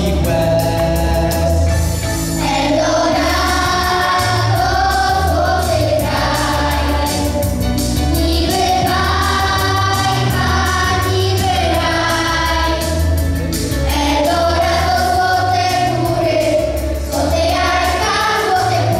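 A children's vocal group singing a song together into microphones, over an instrumental accompaniment with a steady bass and drum beat.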